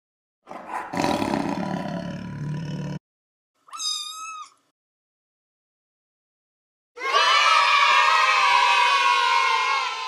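Tiger roar sound effect lasting about two and a half seconds. It is followed about a second later by a brief wavering high-pitched tone. From about seven seconds in, a crowd cheers, carrying on past the end.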